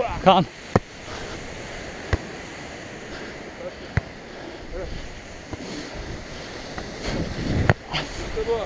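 A volleyball being struck by players' hands and forearms during a rally: four sharp slaps a second or two apart, the last one nearest and loudest, over a steady wash of wind and sea surf.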